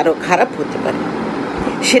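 A woman speaking briefly, then a pause of about a second and a half filled with steady background noise, before she speaks again near the end.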